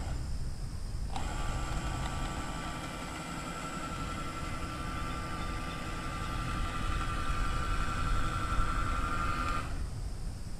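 A remote-control boat's small electric motor whining steadily. It starts suddenly about a second in and cuts off near the end, over a low rumble of wind on the microphone.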